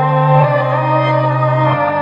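An instrumental hip-hop beat playing: sustained melodic notes over a held bass note, with the bass changing pitch near the end.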